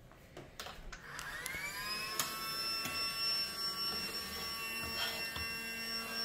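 Casdon toy Dyson handheld vacuum's small battery motor switched on about a second in, its whine rising in pitch as it spins up and then holding a steady high whine. A few light knocks come just before it starts.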